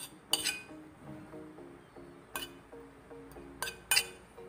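A plate clinking against the rim of a stainless steel mixing bowl, about four sharp clinks, as shredded chicken is knocked off it. Faint background music with a slow melody runs underneath.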